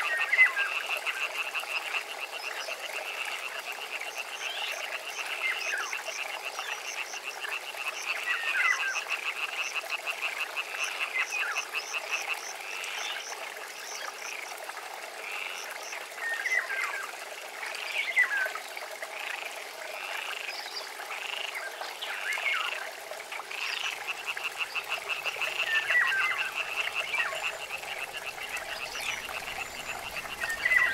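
A chorus of frogs croaking in a steady, fast pulsing rattle, with short falling calls every few seconds.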